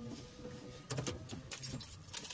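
A few faint small clicks and rattles, one cluster about a second in and more near the end, inside a quiet car cabin.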